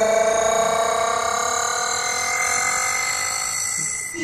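Electronic music playing on a JBL Xtreme portable Bluetooth speaker: a sustained synth tone with several overtones, slowly rising in pitch and fading.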